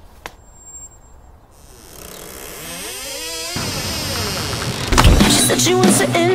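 Start of a rock song. A whine sweeps upward and grows louder, then drums and distorted guitars come in hard about five seconds in.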